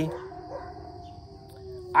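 A dog howling faintly, one long held note, over a steady high insect drone.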